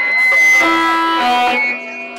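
Electric guitars ringing out on loud held notes that change pitch twice and then fall away near the end, with no drums under them.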